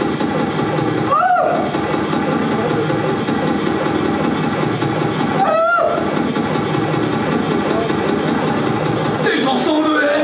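Harsh electronic noise from a keyboard synthesizer: a dense, loud wall of noise with two swooping pitched tones, about a second in and just past the midpoint. A voice comes in over it near the end.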